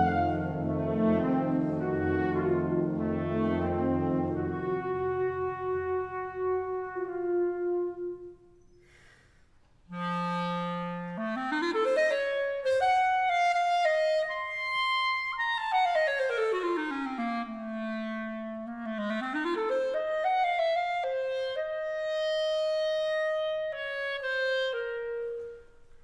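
A wind band holds sustained chords that die away. After a brief silence, a solo clarinet plays an unaccompanied cadenza: a long low note, then fast runs sweeping up, down across its range and back up, ending on held notes as the band comes back in.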